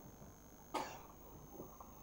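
A single short, soft cough from the lecturer about three-quarters of a second in, over quiet room tone.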